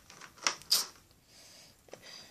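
Two sharp plastic clicks about a third of a second apart, then faint rubbing and a small tick near the end, from Lego Technic Power Functions parts (battery box, lights and cables) being handled.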